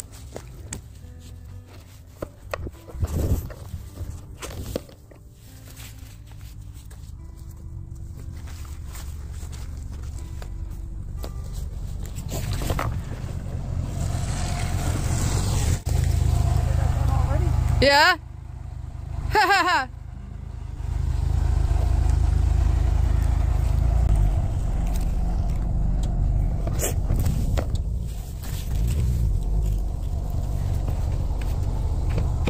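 Pickup truck driving up, its engine rumble building gradually and staying loud through the second half. Near the middle, two short loud pitched calls about a second and a half apart cut through it.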